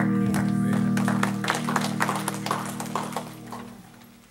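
Acoustic guitar holding its final chord, which rings and then fades away to quiet near the end. A scatter of sharp clicks sounds over the fading chord.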